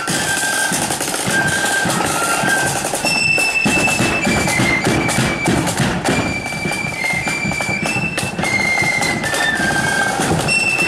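Marching flute band playing a tune: a high-pitched flute melody moving from note to note over a steady beat of drums.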